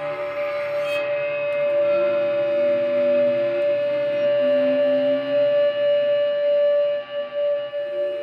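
Archtop guitar bowed with a cello bow: one high note held steady, while lower notes swell in and fade away beneath it.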